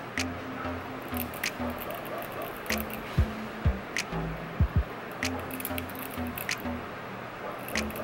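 Background music with a repeating low bass line, with a few sharp clicks scattered over it.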